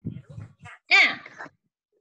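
A high-pitched voice: one short call that rises and falls about a second in, after a few faint brief sounds.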